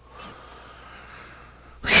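A person's long, faint in-breath, then near the end the start of a loud "whew" breathed out, falling in pitch.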